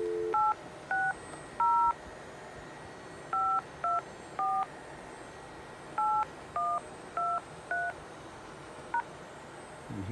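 Grandstream GXV3380 IP phone's speaker: the steady dial tone cuts off at the first keypress, then ten touch-tone (DTMF) keypad beeps dial a ten-digit number in groups of three, three and four, each a short two-tone beep. One faint brief beep follows near the end.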